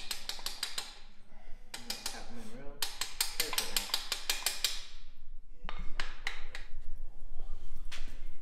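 Hand ratchet clicking in quick runs as it works fasteners on a motorcycle engine, several short bursts of sharp metallic ticks with pauses between.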